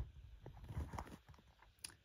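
Faint handling noise: small scattered clicks and crackles, with one sharper click near the end.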